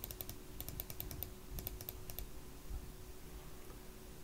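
Faint runs of quick computer-keyboard key clicks in the first half, the keystrokes stepping up a numeric power-amplifier bias setting.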